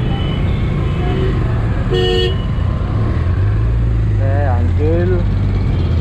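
Street traffic around a motorcycle creeping through congestion, with a steady low engine hum. A vehicle horn honks briefly about two seconds in.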